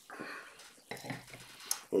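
Tableware being handled: glasses and plates moved on a table, with a few light knocks and a sharp clink near the end.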